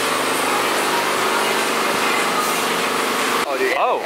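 Steady machine whir with a low, even hum, from a screen-printing conveyor dryer's blowers and belt drive running; it breaks off about three and a half seconds in.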